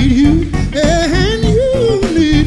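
Live band music with a male lead vocal: the singer holds a wavering sung line that climbs to a peak and falls back, over electric guitar and the rest of the band.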